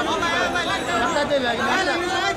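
Crowd chatter: many people talking at once, with several voices overlapping.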